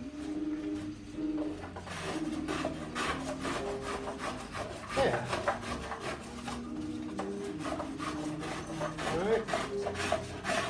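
A hand file rasping along the edge of a cello's flamed maple back in repeated strokes. He is filing because the grain changes direction here and a plane would tear it.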